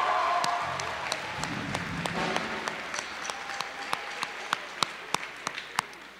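Audience applauding. The clapping is loudest at first, then fades and thins to a few scattered claps.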